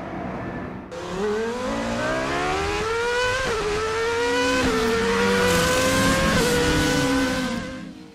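Car engine accelerating hard through the gears. Its pitch climbs steadily and drops back sharply at three gear changes, then it fades out.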